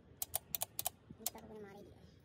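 A quick, irregular run of about seven sharp metallic clicks from a long-handled wrench being worked on an engine bolt, ending about a second and a half in.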